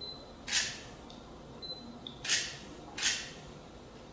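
Three short, crisp swishing sounds as long hair is handled close to the microphone: one about half a second in, then two close together near the end.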